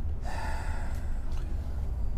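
A person's breath, heard close on a lapel microphone, about a quarter second in and lasting under a second, over a steady low hum.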